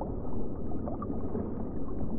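Muffled underwater noise picked up by a camera below the surface: a steady low rumble of water.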